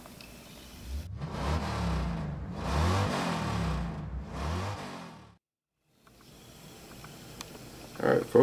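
A car engine revving, with two swells of rising and falling pitch, cutting in abruptly about a second in and cutting off suddenly a little after five seconds.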